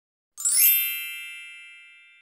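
A single bright chime sounds about a third of a second in, its many high ringing tones fading away slowly over the next two seconds.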